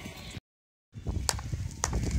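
Hooves of a flock of sheep shuffling and trampling in a yard, broken off about half a second in by a half-second gap of dead silence. After it comes a rumble of wind on the microphone with a few sharp clicks.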